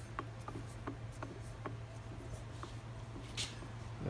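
Light irregular clicks and rubbing from the gear train of a rebuilt South Bend Heavy 10 lathe headstock as its spindle is turned slowly by hand in back gear, greased with Super Lube and running free. A steady low hum sits underneath.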